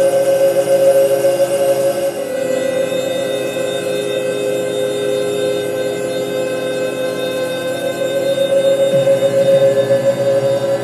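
Live electronic music from a laptop and keyboard: a sustained drone of held synthesizer tones with no beat, the loudest a steady mid-pitched note. The lower tones shift about two seconds in and a new low tone enters near the end.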